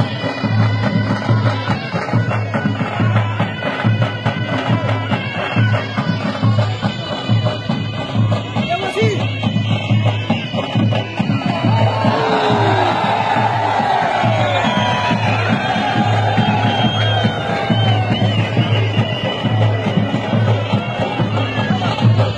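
Traditional folk music with a reedy, bagpipe-like wind instrument over a steady, repeating drum beat. About halfway through, a crowd's shouting and cheering swells up over the music.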